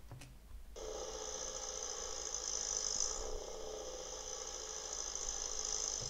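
Exhaust of a 1971 MGB roadster's four-cylinder engine running steadily at idle, coming in about a second in.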